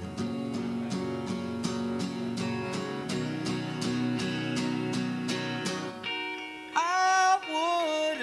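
Live indie rock duo: an acoustic guitar strummed steadily, about four strokes a second, with an electric guitar playing along. About six seconds in the strumming stops and a male voice comes in with a held, wavering sung line.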